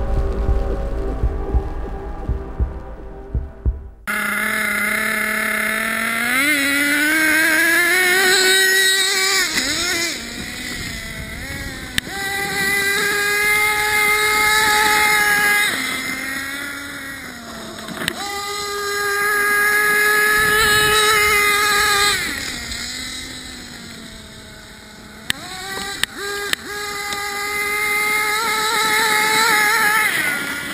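Fading intro music, then the .21 two-stroke nitro engine of an Ofna HoBao Hyper 7 TQ2 RC buggy cuts in suddenly, running at high revs as a high whine. Its pitch climbs and falls several times as the throttle is opened and backed off.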